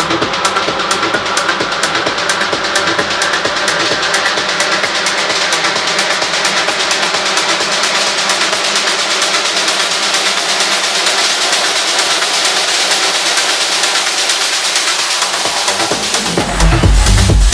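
Techno track in a breakdown: the kick drum and bass are dropped out while fast hi-hats tick on and a noise sweep builds, growing brighter and higher over the whole stretch.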